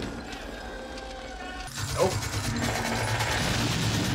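Rapid automatic gunfire from a war film's battle soundtrack, starting suddenly a little under two seconds in after a quieter stretch and running on without a break.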